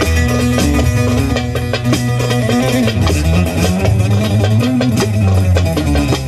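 Bağlama (saz) fitted with a pickup, played with a plectrum in rapid, dense picking and strumming strokes over steady low notes.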